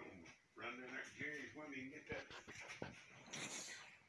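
A person's voice speaking briefly, words not made out, with a couple of small clicks and a short hiss near the end.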